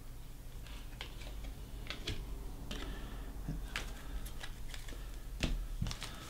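Scattered faint clicks and light taps of baseball cards being handled, shuffled and set down, with a slightly louder tap near the end.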